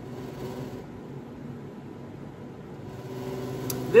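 Steady low hum of room background noise, like a fan or appliance running, with one faint click just before the end.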